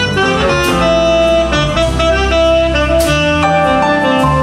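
Live jazz band: a saxophone plays a melodic line over a walking bass and drum kit, with cymbal strikes about a second in and again near three seconds.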